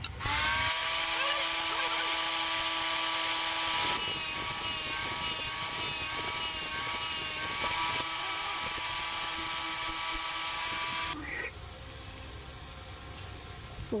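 Electric power tool fitted with a sanding disc, starting just after the beginning with a short rise in pitch, then running steadily with a high whine. It cuts off about eleven seconds in.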